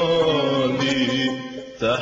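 Music: Arabic vocal chanting with long held, sliding notes in a Middle Eastern style, briefly dropping away just before the end.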